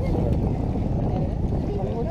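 Wind buffeting the camera microphone: a steady low rumble with no distinct events.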